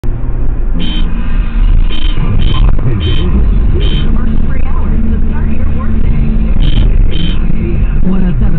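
Engine and road rumble inside a moving car, heard from the cabin, with a few short sharp sounds over it.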